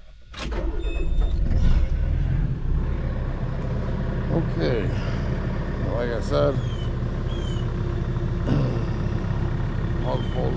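An engine comes in with a click about half a second in, then runs steadily with a low rumble.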